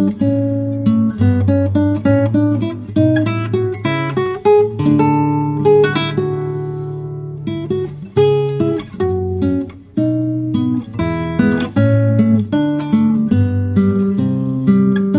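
Background music: a solo acoustic guitar playing a plucked, fingerpicked melody, each note sounding and then fading.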